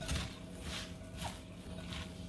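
Hands tossing shredded cabbage coleslaw with its dressing in a bowl: soft, irregular rustling and moist shuffling of the vegetables.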